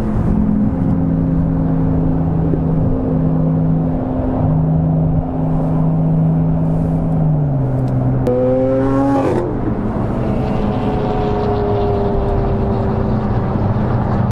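Car engines and road noise at motorway speed, heard from inside a car, with a steady engine drone and a short rising rev about eight seconds in that then drops away.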